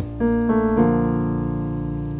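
Piano playing a B-flat major chord over a B-flat octave in the bass. Notes are struck twice, a little over half a second apart, then held and slowly fading.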